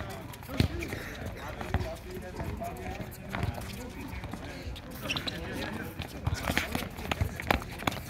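A soccer ball being kicked and bouncing on a hard court, several sharp knocks over the stretch, among players' shouting voices and running footsteps.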